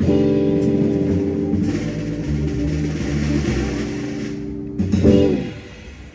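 A jazz guitar trio ends a tune. A chord held on a semi-hollow electric guitar rings over a cymbal wash, with bass notes moving underneath. About five seconds in the band hits one short final chord together, and it dies away.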